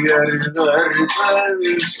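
A man singing in Turkish to his own strummed acoustic guitar, holding a long, slightly falling note in the second half.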